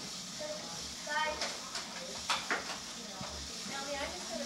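A young child's high voice is heard briefly about a second in, and a few sharp clicks follow, all over a steady hiss.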